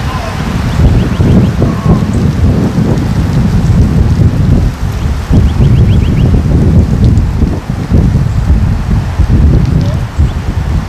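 Wind buffeting the microphone: a loud, uneven low rumble that surges and dips.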